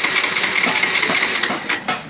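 Bajaj Pulsar 150's electric starter motor cranking the engine, switched through the starter relay energised straight from the battery, and stopping just before the end. The engine cranks without firing because the ignition key is off. The cranking shows the starter relay is working.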